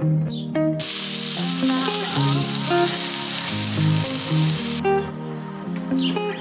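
Food sizzling as it fries in a pan, a loud hiss that cuts in about a second in and cuts off abruptly about a second before the end, over guitar background music.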